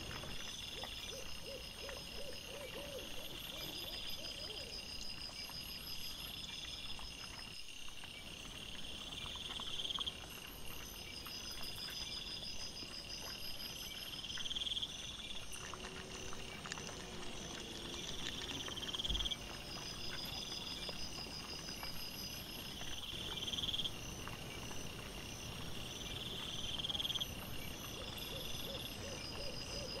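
Night insects chirping in high-pitched pulsed trains, each about a second long, repeating over and over.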